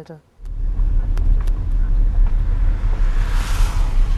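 Car driving, heard from inside the cabin: a steady low engine and road rumble that starts suddenly about half a second in. A rushing hiss swells briefly around three and a half seconds in.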